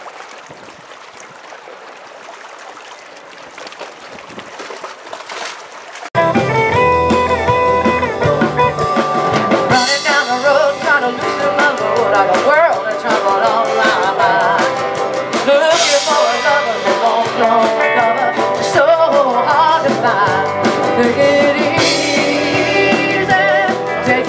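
Faint wind and water noise for about six seconds, then a sudden cut to a live rock band playing loudly: electric guitar, drum kit and a singer.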